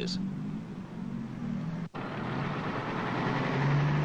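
Bus engine running with a steady low hum. The sound drops out for an instant about two seconds in, then returns rougher and grows louder.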